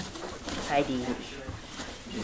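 Small dogs play-fighting: a short play growl that falls in pitch about halfway through, with a person laughing.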